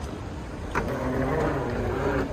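Airport terminal concourse ambience: a steady low rumble with crowd background. Just under a second in, a louder pitched sound of several steady tones starts and lasts about a second and a half.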